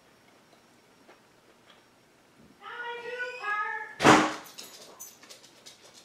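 A high-pitched, wavering cry lasting about a second and a half, from a cat or a small child, then a single sharp knock or bang, the loudest sound, followed by a few light clicks.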